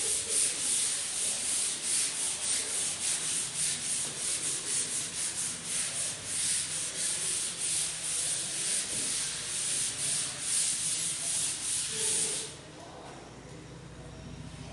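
A duster rubbed over a chalkboard in quick, repeated back-and-forth strokes, erasing chalk writing. The scrubbing stops abruptly shortly before the end.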